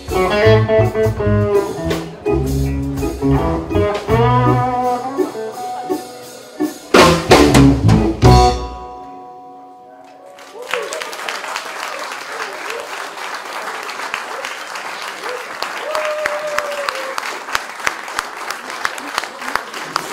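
A live band of electric guitar, electric bass, Yamaha keyboard and Sonor drum kit plays the closing bars of a song and ends on a few loud accented hits about seven to eight seconds in, letting them ring out. After a short lull the audience applauds for the rest of the time.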